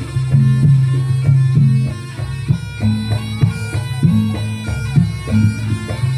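Reog Ponorogo accompaniment music played through loudspeakers: a shrill, reedy slompret shawm carries a wavering melody over sustained low gong tones and steady drum strokes.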